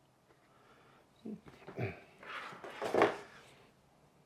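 Soft handling noises: after about a second of quiet, a few faint rustles and light bumps as a small solar panel is laid on a table and a bundle of USB charging cables is picked up.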